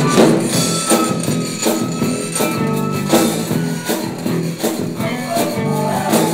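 Live zydeco band playing an instrumental passage with a steady dance beat: a rubboard (frottoir) scraped in rhythm over drum kit, electric guitar and bass.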